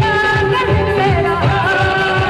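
A woman singing a Punjabi song live into a microphone, in long wavering held notes, backed by a band with keyboards and a steady drum beat.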